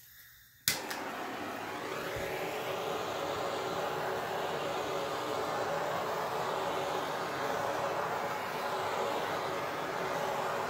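Handheld gas torch lit with a sharp click just under a second in, then burning with a steady hiss as it is played over a wet acrylic pour to bring up cells.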